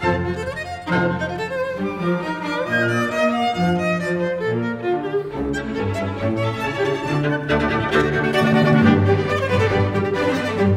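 Solo viola playing with a full symphony orchestra, with strings and bassoons among the players, in a busy passage of sustained, shifting notes that grows louder near the end.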